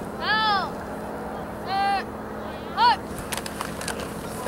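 A young player's voice shouting three high-pitched calls, the snap count at the line of scrimmage, with the last one short and sharp. Scattered short clacks follow near the end as players start to hit.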